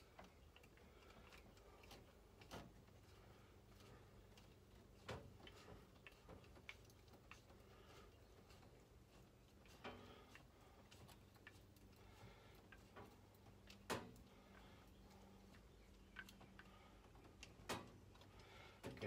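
Near silence broken by a handful of faint, scattered clicks and ticks of a screwdriver turning the wire terminal screws on a new circuit breaker, the loudest about three-quarters through.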